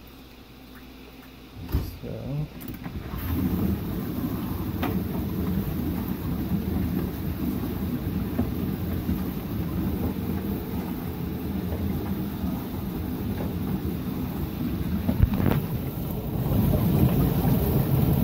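GE dishwasher's pump motor running with water rushing and spraying inside the tub, starting about three seconds in after a thump and carrying on as a steady rumble, with a click later on. The pump is moving water but it is sprayed around inside the machine rather than drained away, the machine's fault.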